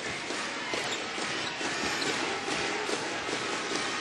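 Arena crowd noise during live basketball play: a steady din of many voices filling the arena.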